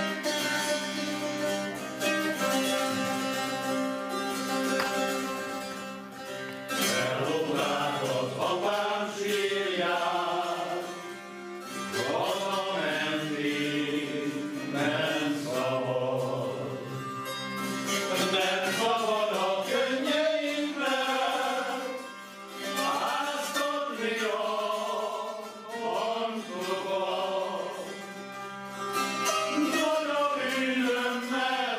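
Hungarian citera (zither) playing a folk tune, joined about seven seconds in by male singing carried on over the zither accompaniment.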